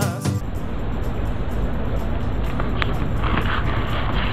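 Background music cuts off just after the start, giving way to a steady, muffled background rumble picked up by the small built-in microphone of spycam sunglasses, with faint voices near the end.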